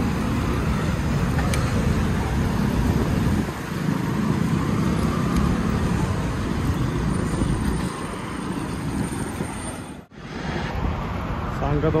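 Steady road traffic noise, the engines of motorcycles and cars idling and moving around a cyclist. It cuts off abruptly about ten seconds in.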